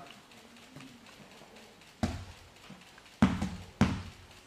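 Three sharp thuds on a training mat, about two, three and nearly four seconds in, the last two loudest.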